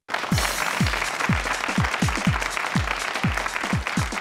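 Studio audience applauding over upbeat music with a thudding beat about twice a second, both starting abruptly.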